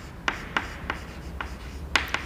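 Chalk writing on a chalkboard: several short, sharp taps and scratches as letters are chalked onto the board.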